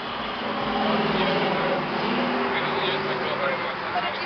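Road traffic passing the stop: a motor vehicle's engine and tyre noise swells about a second in and stays up, with voices over it.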